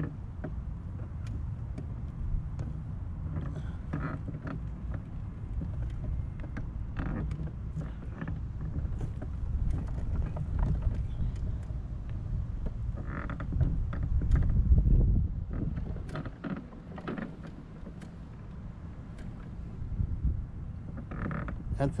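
Quickie power wheelchair driving over uneven grass: a steady low rumble from its drive motors and wheels, with the chair's frame creaking and rattling over the bumps, loudest a little past halfway.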